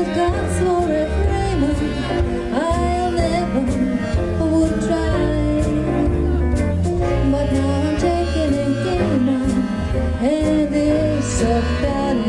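Live jazz combo: a woman singing a swing standard over a walking bass line with drums and cymbal strokes.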